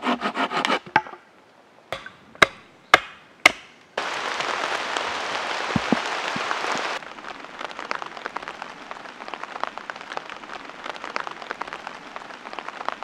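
Wood cracking and splintering as a branch is broken over a stump, then four sharp chopping strikes on the wood about half a second apart. A loud steady hiss follows for about three seconds, then a quieter crackling noise.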